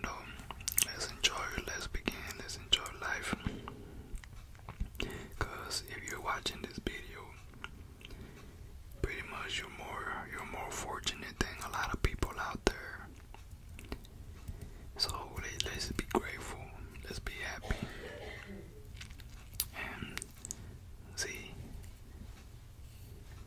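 Whispering close to a microphone, broken by wet mouth clicks and chewing sounds.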